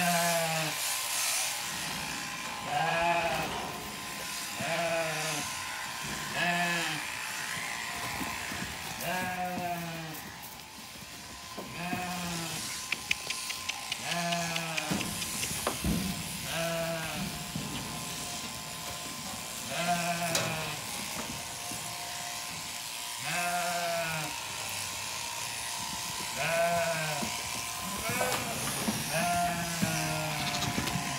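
Zwartbles sheep bleating again and again, about a dozen calls spaced two to three seconds apart, while electric sheep-shearing clippers run steadily underneath.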